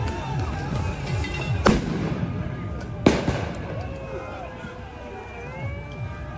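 Two sharp explosive bangs, about a second and a half apart, the second louder with a trailing echo, over a crowd's shouting at a clash between protesters and riot police.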